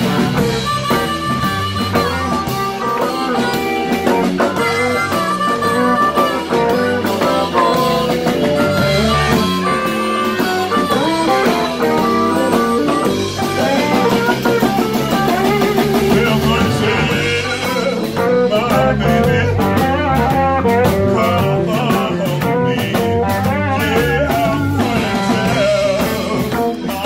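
Live blues band playing an instrumental passage: electric guitar and drum kit, with a harmonica played cupped against the microphone.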